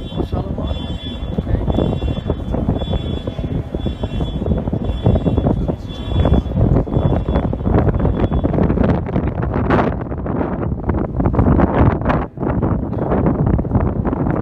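Wind buffeting a phone's microphone outdoors: loud, uneven rumbling gusts that rise and fall throughout.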